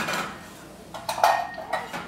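Stainless steel mixing bowl knocking and clinking against a steel worktable as the sugar and yeast in it are stirred by hand, with a short metallic ring about a second in.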